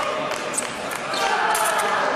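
Fencing hall: shoes squeaking and feet striking the pistes, with short high squeaks and thin ticks, over voices in a large echoing room.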